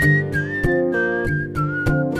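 A whistled melody, one pure note at a time stepping down in pitch, over steady strummed acoustic guitar chords.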